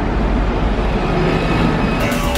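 Loud, steady rumble of street traffic.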